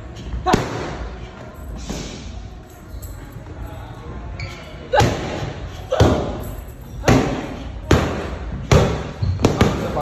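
Boxing gloves smacking focus mitts in pad work: one punch about half a second in, then after a lull a run of punches roughly one a second from about five seconds in, coming faster near the end, with the room's echo.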